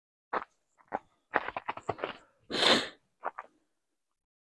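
Footsteps on dry leaf litter and rock, a few irregular steps. About two and a half seconds in comes a single short, loud sneeze from the walker, followed by two more steps.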